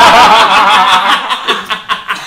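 Several men laughing hard together, loudest in the first second, then breaking into shorter gasping pulses that die down toward the end.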